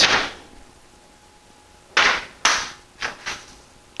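A sheet of paper flung through the air: two sharp swishes about half a second apart, starting about two seconds in, then a few fainter rustles.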